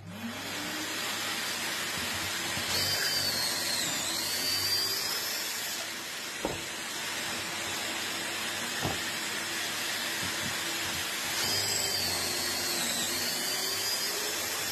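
Dust extractor vacuum switching on with a brief rising whine and then running steadily, drawing through the hose on a Kreg pocket-hole jig. Twice a cordless drill whines as it bores pocket holes through the jig, its pitch dipping under load and recovering, with two sharp knocks between the holes.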